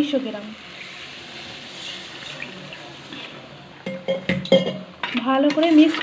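Water poured into a hot metal pan of fried masala and mutton, sizzling steadily for a few seconds. A metal spoon then clinks and scrapes against the pan a few times, about four seconds in.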